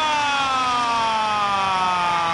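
A football commentator's long drawn-out shout, one held vowel sliding slowly down in pitch, reacting to a shot that just misses the goal.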